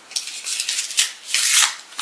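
Paper envelope of a greeting card being torn and rustled open by hand, in three short bursts of paper noise.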